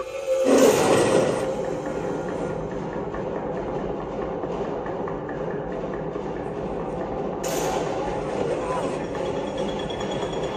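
Film soundtrack: a steady, dense bed of score and sound effects that swells in about half a second in, with a brighter hiss joining about seven and a half seconds in.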